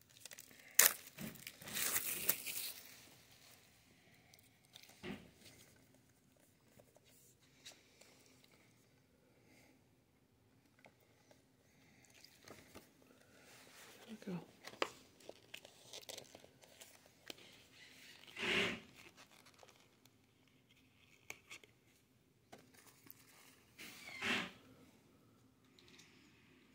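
Plastic shrink-wrap being torn and peeled off a Blu-ray steelbook case: a sharp click and a loud rip in the first few seconds, then faint intermittent crinkling and rustling of the plastic.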